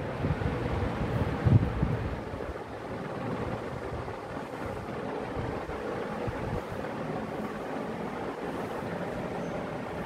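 Tabla music dying away with a few last low drum strokes in the first two seconds, then a steady even rushing noise.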